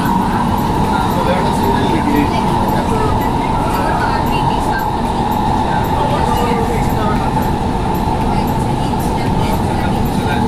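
Doha Metro train running through a tunnel, heard from inside the carriage: a steady rumble with a steady high whine over it.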